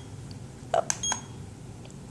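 La Crosse projection alarm clock giving a short, high electronic key beep about a second in as one of its buttons is pressed, with the button's plastic click.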